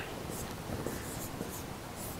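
Marker pen writing on a whiteboard in short, scratchy strokes.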